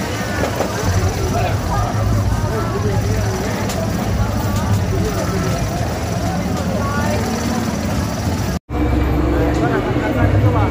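Fairground din: a babble of crowd voices over a steady low machine hum from the rides, with a momentary dropout near the end.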